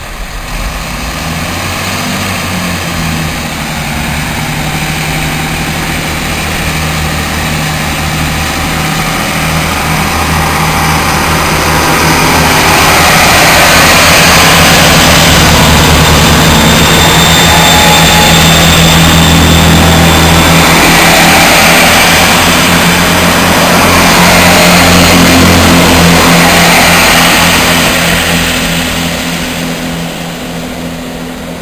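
First Great Western Networker Turbo diesel multiple unit running under power past the platform. Its underfloor diesel engines drone steadily with wheel and rail noise, building to loudest while the carriages go by and fading near the end as the train draws away.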